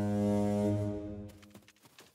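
A deep, low horn blast with a rich stack of overtones, held and then fading away a little after a second in. Faint, quick light tapping follows near the end.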